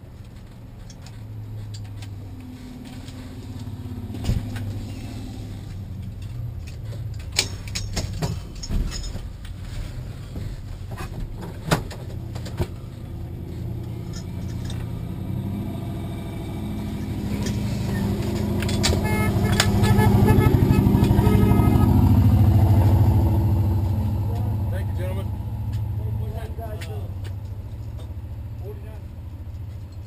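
Car engine running low and steady, heard from inside the cabin of a 1953 Chevrolet Bel Air, with a few sharp clicks and knocks in the first half. The engine sound swells louder from about halfway, peaks around two-thirds through, then fades back down.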